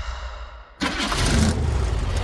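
The Ecto-1, a 1959 Cadillac Miller-Meteor, has its engine started. It catches suddenly a little under a second in and runs loudly.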